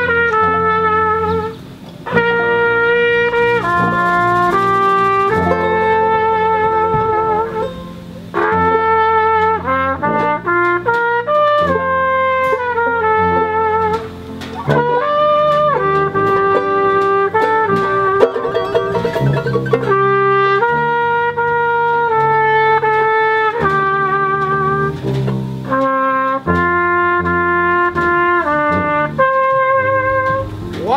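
Traditional jazz band playing live, a trumpet leading the melody over a tuba bass line, with short breaks between phrases.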